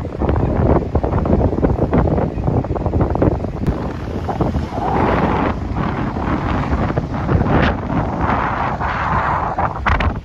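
Strong wind buffeting the microphone in gusts, over the wash of ocean surf. A brighter hiss comes in about halfway through.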